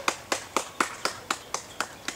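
A rapid, evenly spaced series of sharp clicks, about four a second.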